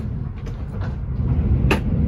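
Kintetsu 'Hinotori' 80000-series limited express heard from inside the passenger cabin while running at speed: a steady low rumble with a few short clicks from the track, the sharpest near the end.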